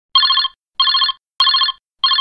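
A telephone ringing: short trilled rings, each under half a second long, repeating about every two-thirds of a second, with a sharp click in the middle.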